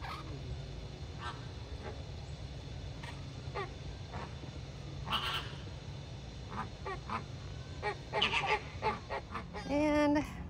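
A flock of flamingos honking: scattered short calls, growing more frequent in the second half.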